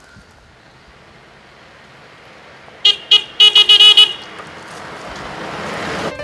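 A horn tooting in a quick run of short, high-pitched beeps about three seconds in, followed by a rushing noise that swells toward the end.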